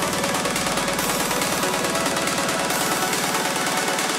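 Trance track in a breakdown with the kick drum out: a rapid, even pulsing synth pattern over a steady low tone.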